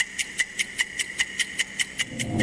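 Fast, even electronic ticking, about five ticks a second, over a steady high tone. It is a clock-style ticking sound effect played out on air.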